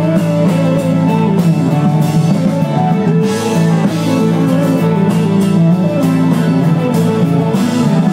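Live rock band playing an instrumental passage with no singing, led by electric guitar with keyboard and drums. Brighter washes of high sound come about three seconds in and again near the end.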